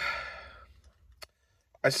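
A man's breathy sigh trailing off the end of a spoken word and fading out, followed by a single faint click, then his speech resumes near the end.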